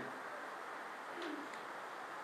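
Steady room tone with a faint hiss, broken about a second in by one brief, low tone that falls in pitch.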